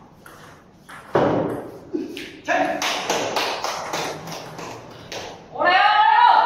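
Table tennis rally: the ball clicking sharply off the paddles and the table in quick succession, roughly every half second. Voices come in from about two and a half seconds, and a loud shout rises near the end.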